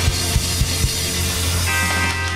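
Live band playing an instrumental guitar boogie shuffle: electric guitar over bass and drum kit, with the drums beating about four times a second over a held bass note.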